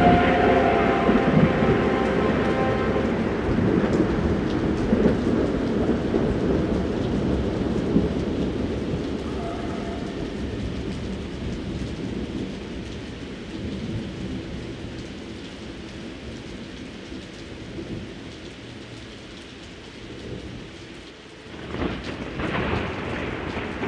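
Thunderstorm sound effect: rolling thunder over steady rain, slowly fading out. A held organ chord dies away in the first second.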